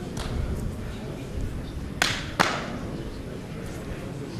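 Two sharp smacks about half a second apart, ringing briefly in a large hall, over a low steady hall rumble.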